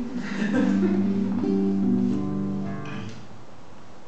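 Acoustic guitar playing slow strummed chords that are left to ring and die away toward the end.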